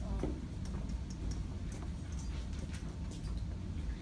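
Light, irregular ticks and taps of a marker on a whiteboard as numbers are written, over a low steady room rumble.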